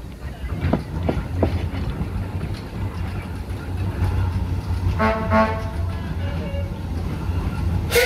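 Foden steam wagon under way at walking pace: a steady low rumble from the engine and road wheels, with a few knocks about a second in. About five seconds in comes a short two-part toot.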